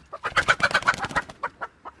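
A grey hen giving a loud, rapid run of squawks for about a second as she is grabbed by hand, then a few scattered, quieter clucks.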